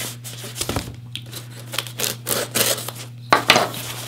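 A knife slitting the packing tape on a cardboard box in a series of short scrapes, then the tape tearing and the cardboard flaps rustling as the box is pulled open, loudest a little past three seconds in.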